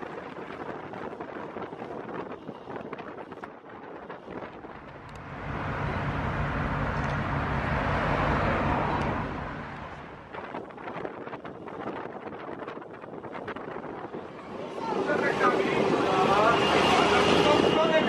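Ride noise on board a 1982 Ikarus 280.02 articulated bus filmed at an open window: wind on the microphone and road noise. The bus's diesel engine drone swells for a few seconds mid-way, then fades back. Voices talking come in loudly near the end.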